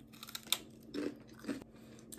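A person biting into and chewing crunchy food at close range, with a few sharp crunches in the first half-second, then quieter chewing.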